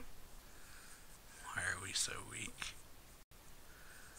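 A person's voice speaking softly for about a second, near the middle, with a brief cut-out of all sound near the end.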